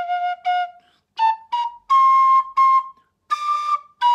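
Chieftain tin whistle in C played in short separate notes that climb from the low octave into the high octave: two short low notes, then a rising run, the longest held about two seconds in. These are the high notes that, on this whistle, have to be pinched out with harder, focused breath.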